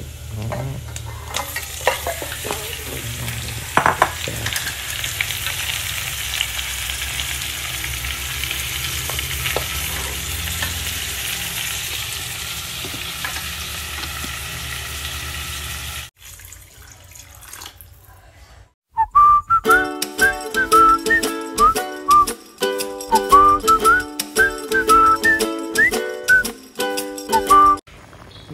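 Raw pork trotter pieces sizzling in hot oil in a pot on a gas stove as they are tipped in and stirred, with a few knocks and scrapes. The sizzling cuts off about two-thirds of the way through, and after a short lull background music with a gliding melody and a steady beat plays.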